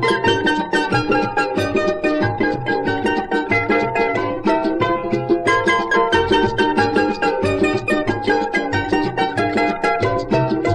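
Ensemble of charangos, soprano, tenor and baritone, playing a huayño: a quick plucked-string melody with the larger baritone charango accompanying in a steady rhythm.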